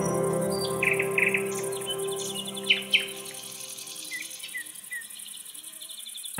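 Soft ambient music fading out over the first few seconds, leaving birds chirping and a steady high insect trill. The loudest moments are two sharp bird chirps near the middle.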